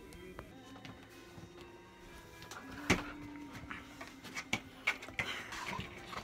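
Quiet background music, with a few sharp clicks and knocks, one about halfway through and several more near the end.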